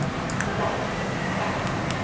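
Steady rushing background noise inside an elevator car, with a few light clicks from its pushbuttons being pressed, one early and two near the end.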